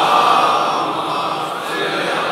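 Congregation chanting the salawat (the blessing on Muhammad and his family) together in unison. It is a dense, steady mass of many voices.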